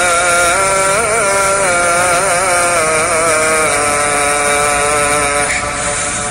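Background music: a solo voice singing long, ornamented held notes in an Arabic-style religious chant, the last note holding steady and fading near the end.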